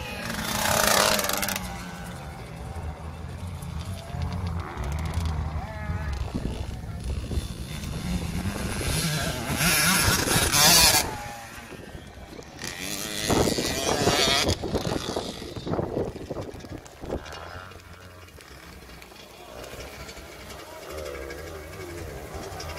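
Small two-stroke youth motocross bike (KTM 65) riding around a wet track, its engine note rising and falling as it revs and changes gear, with a few louder swells as it comes near the camera. Another small motocross bike can be heard running further off.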